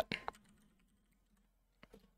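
A few faint, sparse keystrokes on a computer keyboard, with one sharp key click near the end.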